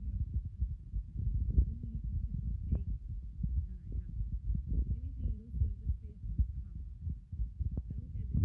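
Low, muffled rumble and irregular thumping from a hand-held phone's microphone, with faint muffled voices underneath.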